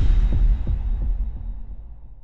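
Intro logo sound effect: a deep bass impact with a few low throbbing pulses, fading out steadily.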